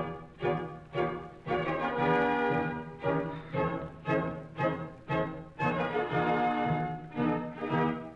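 Orchestra playing short, detached chords in a steady pulse, about two a second, with a couple of longer held chords in between; strings lead.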